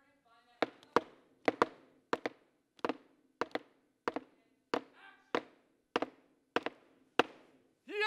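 Hammer and mallet strikes knocking in a steady rhythm, about one or two blows a second and often in quick pairs, with a faint steady hum underneath.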